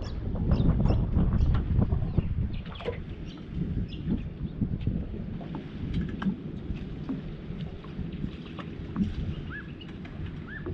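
Low rumble of wind and water against a small aluminium boat, loudest in the first couple of seconds, with scattered small clicks and knocks. A few short bird chirps come near the end.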